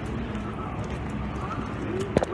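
City street noise with footsteps on the sidewalk and faint voices, a steady background hum of traffic.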